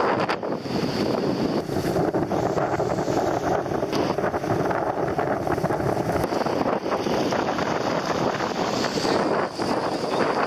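Sea surf washing onto the beach, with wind buffeting the microphone in a steady rush.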